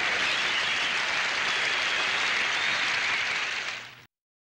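Studio audience applauding and cheering in a dense, steady wash of clapping with high shrieks in it, fading out near the end.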